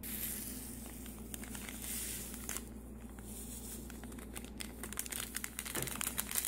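Close rustling and crinkling handling noise, with many small crackles throughout.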